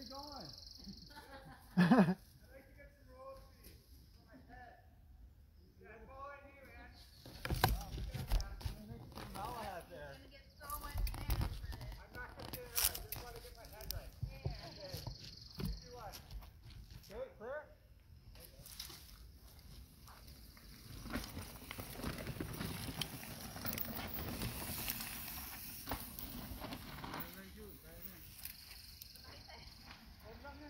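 Voices talking on and off, with a few sharp knocks about a third of the way in and a stretch of steady rushing noise in the second half.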